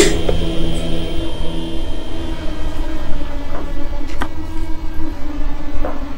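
Background film score of low, sustained drone notes that shift pitch partway through, with a faint click about four seconds in.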